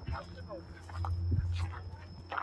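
Indistinct voices of people around, too faint to make out words, over a low steady hum that swells in the second half.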